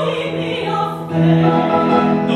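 Operatic singing with musical accompaniment; a long held low note begins about a second in.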